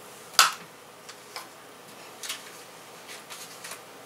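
Light clicks and knocks of small hard items being picked up and set down on a desk. The sharpest comes about half a second in, followed by a few softer taps.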